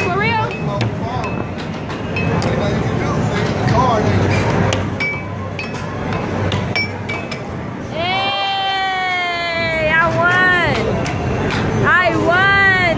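Air hockey puck and mallets clacking on an air hockey table in quick, irregular hits. About eight seconds in, a voice lets out a long, slowly falling cry, followed by shorter rising-and-falling whoops.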